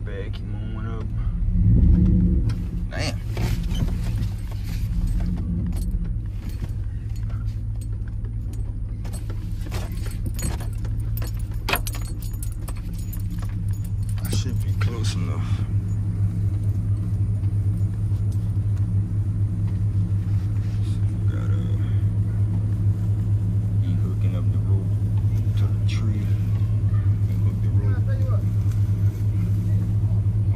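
Pickup truck engine idling steadily, heard from inside the cab, getting somewhat louder in the second half. Keys jangling and small clicks and rattles in the cab in the first half.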